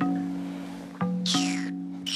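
Film score: low plucked-string notes struck about once a second, each fading away, with a high sliding tone that falls in pitch near the end.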